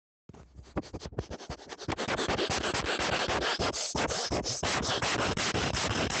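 A person sniffing rapidly right up against a microphone, a harsh, scratchy run of short breaths in. It starts suddenly a moment in and gets louder about two seconds in.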